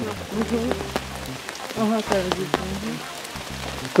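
Rain falling steadily, with individual drops striking close by as sharp ticks. Voices murmur briefly about half a second and two seconds in.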